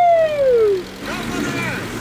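A man's long drawn-out shout, falling in pitch until it breaks off just under a second in, over the steady low hum of a moving tow truck. Fainter voices follow.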